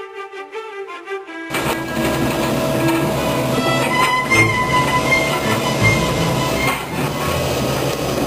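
Violin music that cuts off about a second and a half in, giving way to a tracked excavator working below: its engine running steadily as it digs out the foundation for a retaining wall.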